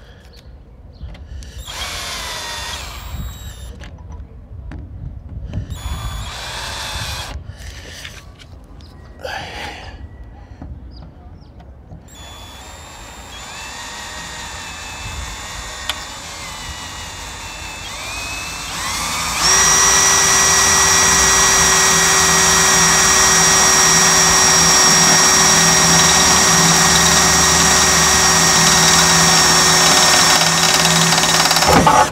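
Electric power drill boring into a trailer's metal panel: short stop-start bursts in the first ten seconds or so, then it speeds up and, from about twenty seconds in, runs loud and steady at one high speed.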